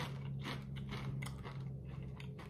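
Crunching and chewing of hollow pretzel shells in the mouth: a continuous run of small, irregular crunches.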